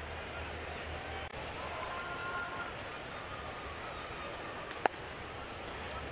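Steady ballpark crowd murmur, then a little before five seconds in a single sharp pop of a pitched ball landing in the catcher's mitt.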